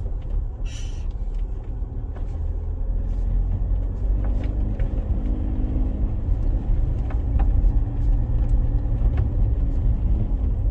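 Cabin noise of a 2010 Land Rover Freelander 2 driving along a rutted dirt track: a steady low rumble of engine and tyres, with a faint engine hum in the middle and a few light knocks.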